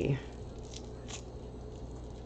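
Faint handling noise of a floral pick with a plastic egg and Easter grass being turned in the hands: two soft clicks in the middle, over a steady low room hum.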